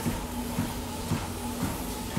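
Treadmill running with a steady low hum and faint footfalls on the belt about twice a second.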